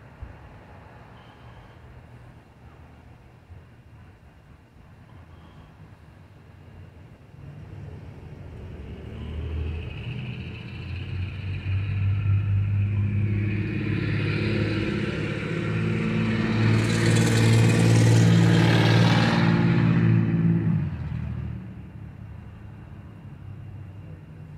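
A motor vehicle passing close by: a low, steady engine note builds over several seconds, peaks with loud tyre hiss near the end, then falls away quickly.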